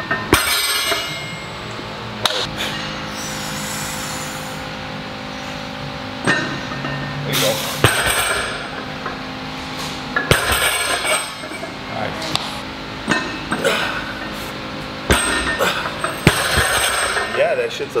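Music playing, with several sharp metallic clanks and knocks from a loaded trap bar and its bumper plates at uneven intervals, and indistinct voices.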